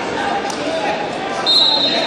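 Spectators chattering in a large hall, and about one and a half seconds in a short high squeak of wrestling shoes on the mat.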